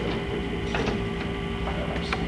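Steady electrical hum and background noise of a tape recording, with a few faint ticks and scrapes.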